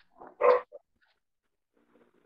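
A dog barking once, a short loud bark about half a second in.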